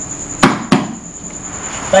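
Two quick hand slaps, a tap-out submitting to a tightened jiu-jitsu triangle choke.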